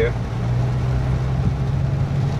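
Steady cabin noise inside a Toyota Yaris in pouring rain: a low, even engine hum under a constant hiss of rain and wet road.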